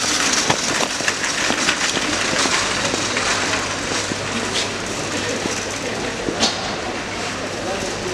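Busy supermarket hubbub: a metal shopping trolley rattling as it is pushed along, over the background chatter of shoppers.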